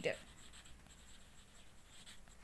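A pen writing by hand on a paper textbook page, faint.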